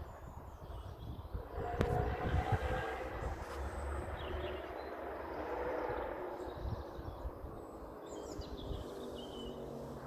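A broad outdoor rushing noise swells about two seconds in and fades away over the next several seconds, like something passing at a distance, over low wind rumble on the microphone. A few faint bird chirps come through.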